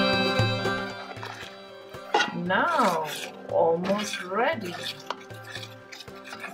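Background music fades out over the first second or so. Then a spoon stirs thick, cooked-down wheat pudding in a metal pot, with clinks and scrapes against the pot.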